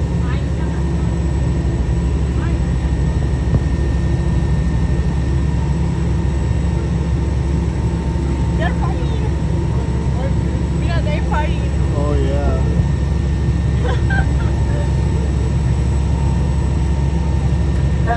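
Boat engine running steadily: a loud, unchanging low drone with a faint steady whine above it.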